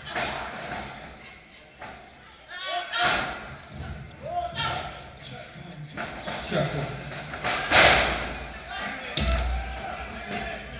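A wrestler's body hits the boards of a wrestling ring, a loud boom with a brief metallic ring about nine seconds in. Lighter thuds come earlier, and indistinct voices shout from ringside.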